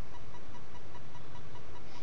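Steady hiss of a webcam microphone, with no distinct sound events.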